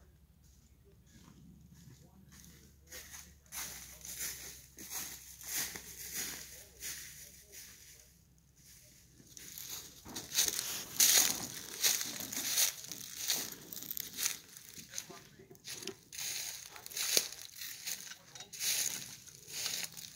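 Footsteps crunching through dry fallen leaves at a walking pace, getting louder about halfway through.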